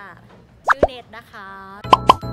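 Quick rising 'plop' pop sound effects of the kind added in editing: two in quick succession about two-thirds of a second in, and two more at the very end.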